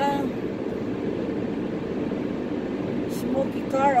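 Steady road and engine noise inside a moving car's cabin: an even low hum.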